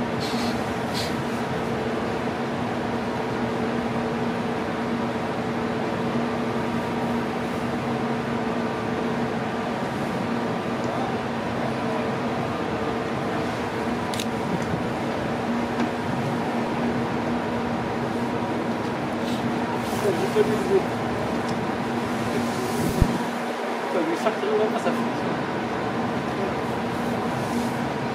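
Steady hum of the coastal ship's engines and machinery, holding a few constant tones. Faint voices come through now and then, mostly near the end.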